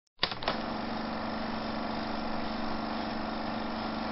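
A couple of clicks just after the start, then a steady hum with hiss: one low tone held without change under an even noise.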